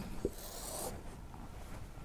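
Marker pen scratching on a whiteboard: a short stroke of writing lasting about half a second, starting about a third of a second in.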